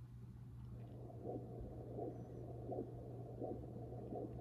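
Faint pulsed-wave Doppler audio from an Alpinion MiniSono ultrasound scanner: soft, regular pulses of arterial blood flow, a little faster than once a second, over a low steady hum.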